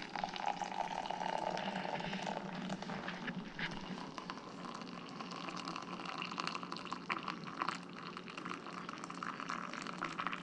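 Hot chocolate poured in a steady stream from a glass measuring jug into a ceramic mug, splashing as the mug fills.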